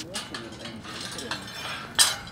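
Faint voices of people walking together, with rustling and a sharp clink near the end.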